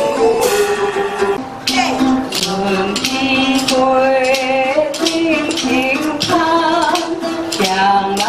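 Traditional folk music: plucked string instruments with sharp, quick note attacks, and a woman singing.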